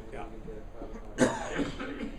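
A person coughs: one sharp, loud cough a little past halfway, with a smaller one right after, over faint talk.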